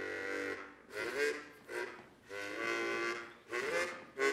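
Harmonica played in chords: five held chords or phrases, the longest about a second, with short gaps between them.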